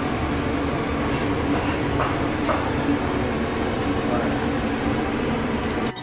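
Steady, loud rushing background noise with a few faint clicks, which drops off sharply near the end.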